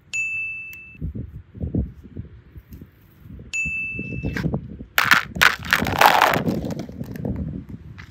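A bright, single-pitched ding chime, a sound effect, rings twice, each time for just under a second: at the very start and about three and a half seconds in. Low handling thumps come between the two dings, and a loud burst of rustling follows about five seconds in.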